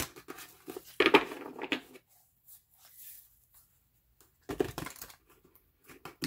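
A deck of tarot cards being shuffled by hand: papery rustling and flicking in two bursts, one through the first two seconds and another about four and a half seconds in.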